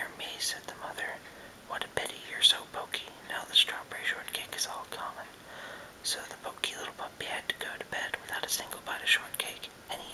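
A man whispering steadily in short phrases, with a brief pause about five seconds in.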